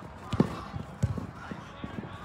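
Three short dull thuds of a football being struck during dribbling on artificial turf, about half a second apart, with players running.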